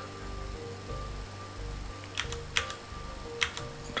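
Faint sustained background music with a few sharp computer-keyboard key clicks, about two seconds in and again near the end.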